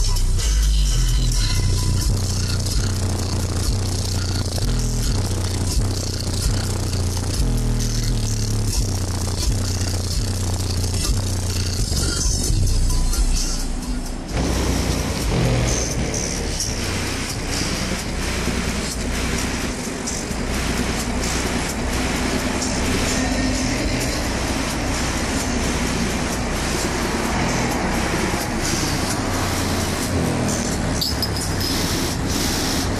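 Car subwoofer playing a hip-hop track loud, with a heavy bass beat pulsing for the first half. About halfway it changes abruptly to a steadier low bass with a dense rattle, which fits the metal roller shutter shaking under the bass.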